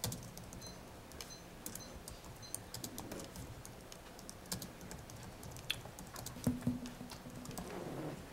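Faint typing on a computer keyboard, irregular clicks, with a few soft thumps about six and a half seconds in.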